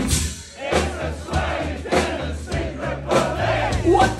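Punk band playing live, with drums, bass and electric guitar over a steady pulse, and the crowd shouting along. The music drops out briefly just under half a second in and then comes back in.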